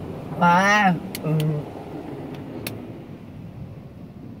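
Steady hiss of car-wash water spray on a car, heard from inside the cabin. About half a second in, a person calls out loudly with a rising and falling pitch, followed by a shorter voiced sound and a few sharp clicks.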